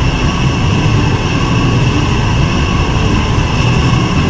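Loud, steady rumbling noise, heaviest in the low end, with a faint high hum above it and no clear melody: a noise passage within an experimental electronic album track.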